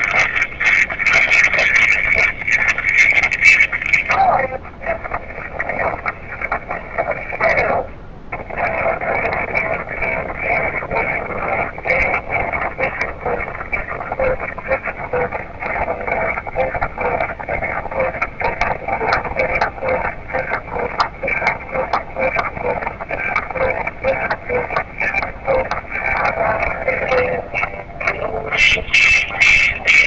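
Indistinct voices and background noise played back through the small speaker of a handheld media player, tinny and narrow with no clear words.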